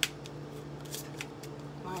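Tarot cards being handled, with a sharp card snap at the start and a softer one about a second in, over a steady low hum.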